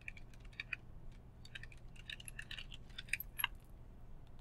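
Computer keyboard being typed on: quick, irregular keystrokes, with two louder key presses about three seconds in.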